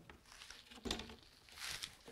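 Faint handling sounds of a drone's lithium polymer battery being set down and positioned on the drone's top plate: a soft knock about a second in and a brief rustle near the end.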